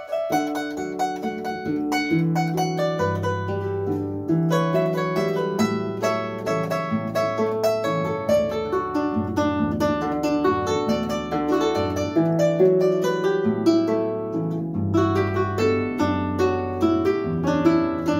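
Llanero folk harp played with both hands: a plucked melody in the treble over a simple bass line, notes ringing on without a break.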